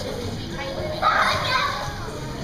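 Young children's voices and chatter echoing in an indoor pool hall, with one sudden louder burst about a second in, a shriek or a splash as the child enters the water.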